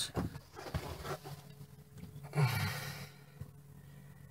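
A few faint clicks and knocks as the RV refrigerator door is opened, then a man's short sigh a little past halfway.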